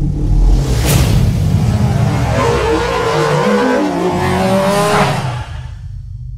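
Animated logo-intro sound effect: a loud low rumble with a sharp whoosh about a second in, then engine-like revving tones that glide up and down in the second half. Another whoosh comes near five seconds, and the sound then fades.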